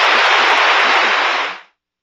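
An audience applauding, a dense spread of clapping that cuts off suddenly about one and a half seconds in.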